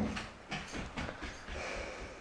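A man fake-snoring while feigning sleep: a few short, irregular snorts and breaths.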